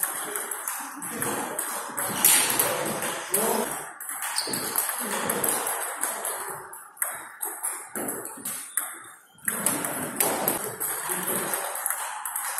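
Table-tennis rally: the ball clicking off rubber-faced paddles and bouncing on the table in quick succession, ringing in a large, echoing gym hall, with a brief pause about nine seconds in.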